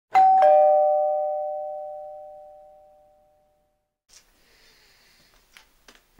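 Two-note doorbell-style chime, a ding-dong: a higher note is struck, then a lower one a fraction of a second later, and both ring out and fade away over about three seconds.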